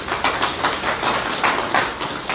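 A small group of people clapping their hands: a dense, steady run of sharp claps.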